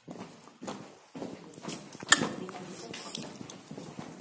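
Hard footsteps on a stone floor, a few sharp, irregular knocks echoing in a vaulted stone tunnel, with voices murmuring in the background.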